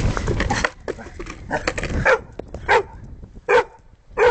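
A dog barking at a skateboard: about four sharp barks, spaced under a second apart, after a brief low rumble at the start.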